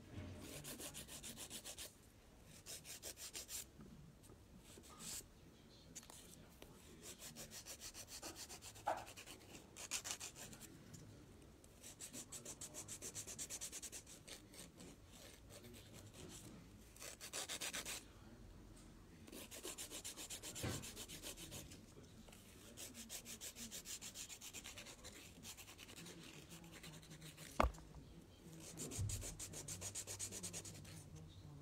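A hand nail file rasping in quick back-and-forth strokes across fingernails, in spells of one to three seconds with short pauses between them. A single sharp tap comes near the end.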